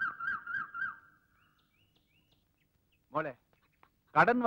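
A rooster crowing: one long, wavering call that ends about a second in, followed by faint bird chirps.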